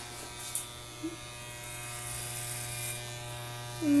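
Corded electric hair clippers buzzing steadily as they trim a small child's hair.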